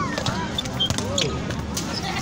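Several short thuds of a futsal ball being kicked and bouncing on a concrete court, with high-pitched shouting voices over them.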